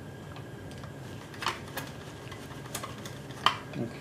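Light metal clicks and knocks as a carburetor is worked loose from a small Briggs & Stratton single-cylinder engine and set down. About five separate clinks, the loudest near the end.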